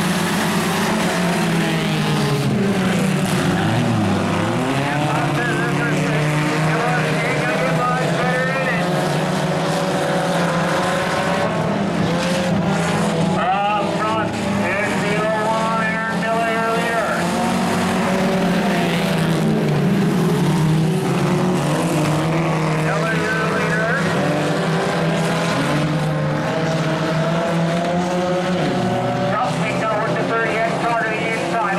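A pack of four-cylinder, front-wheel-drive sport compact race cars running together on a dirt oval, several engines overlapping, their pitch rising and falling again and again as the drivers get on and off the throttle through the turns.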